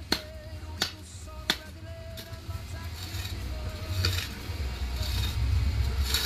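A hoe blade striking dry, leaf-littered soil at the base of a cassava plant: three sharp strikes about two-thirds of a second apart in the first two seconds, then softer scraping and digging at the roots.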